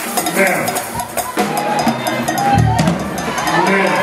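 Live gospel praise band playing a fast beat: drum kit and percussion with sharp, evenly spaced strikes over keyboards and organ, with congregation voices in the mix.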